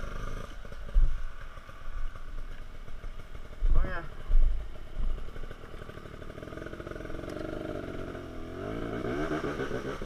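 Dirt bike engine running at low revs, its pitch rising and wavering near the end, with a few dull thumps along the way.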